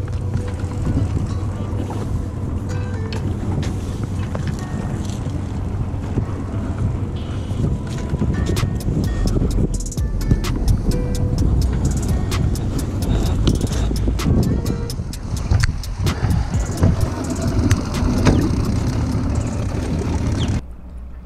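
Background music over wind buffeting the microphone, with repeated knocks and rattles of anchor line and gear being handled on an aluminium boat's deck.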